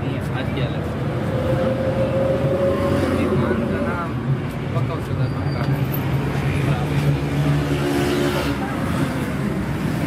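Indistinct voices over a steady low mechanical hum.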